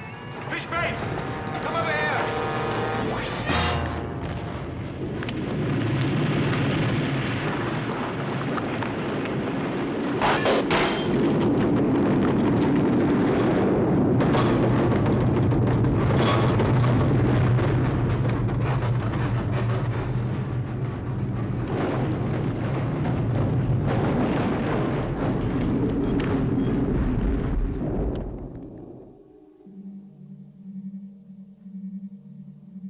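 Earthquake sound effect: a loud, continuous rumble with crashes through it, under music, fading away near the end.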